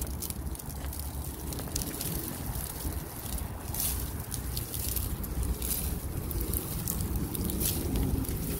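Wind rumbling steadily on the microphone, with scattered sharp ticks and crackles of ice coating on pine needles as the icy branches are grabbed and shaken.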